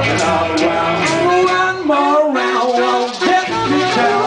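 Live band playing a song, with a pitched lead line bending over guitar and rhythm. The bass thins out for about a second past the middle.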